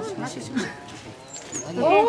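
Voices of several people talking, then a loud called-out voice near the end.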